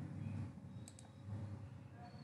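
Two quick clicks at a computer, close together about a second in, over faint room noise.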